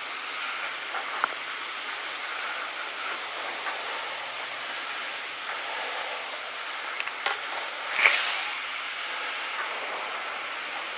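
A skier boarding a chairlift at the bottom station: a steady hiss, a few light clicks, and a louder scuffing thump just after eight seconds in as the chair seat meets the skier.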